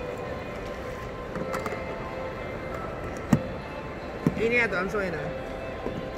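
Background music and indoor public-space ambience, with a sharp knock about three seconds in and another about a second later. A short stretch of voice comes near the end. No blender is running.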